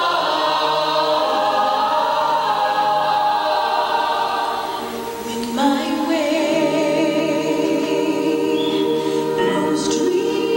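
Mixed choir of young voices singing held chords, changing chord about halfway through, with a young woman's solo voice singing out in front.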